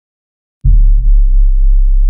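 A deep bass drone starts suddenly about half a second in and then holds steady: one very loud low hum with a few faint overtones.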